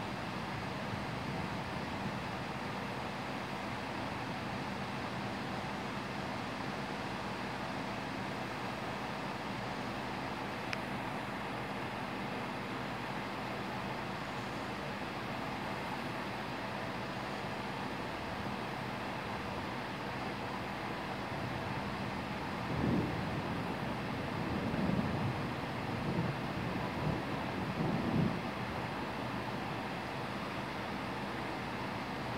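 Heavy rain falling steadily in a thunderstorm, an even hiss throughout, with a few low rumbles of thunder in the last several seconds.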